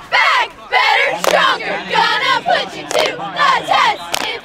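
A squad of high school cheerleaders shouting a cheer in unison, in short rhythmic phrases, with a few sharp claps between them.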